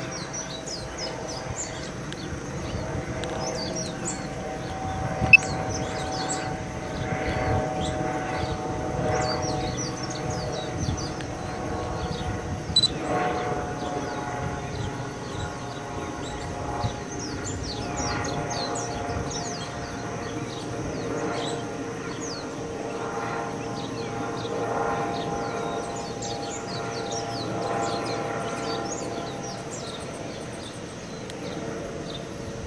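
Small birds chirping and tweeting over and over, over a steady hum that wavers slowly in pitch. Two sharp clicks stand out, one about five seconds in and one near the middle.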